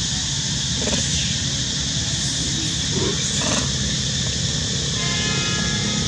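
Steady outdoor forest ambience: a continuous high, hiss-like drone with a couple of faint, brief squeaks about one and three seconds in. Faint music tones come in near the end.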